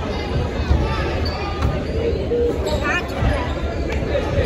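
Basketball being dribbled on a hardwood gym floor during play, repeated low bounces under the voices and calls of spectators in the gym.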